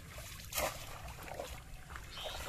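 Water splashing and sloshing as a bamboo polo fish trap is pushed down through shallow pond water, with the loudest splash about half a second in.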